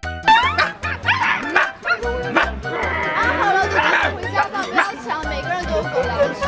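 A small puppy yipping and whining in short, high, sliding cries over upbeat background music with a steady beat.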